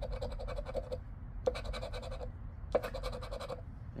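A round scratcher tool scraping the latex coating off a Florida Lottery $500 Madness scratch-off ticket. It goes in rapid strokes, in three bursts with short pauses between.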